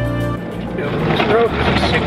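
Background music that stops about half a second in, giving way to the steady noise of a vehicle driving on a dirt road, heard from inside the vehicle, with a voice starting up around the middle.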